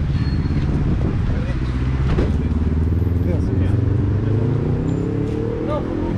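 Engine of a Mercedes-Benz city bus idling steadily close by, with an engine rising in pitch over the last couple of seconds as a vehicle speeds up.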